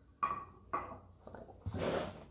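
Short knocks and clatter, then a louder rustling of the camera being handled near the end, with a woman saying "hold on" twice.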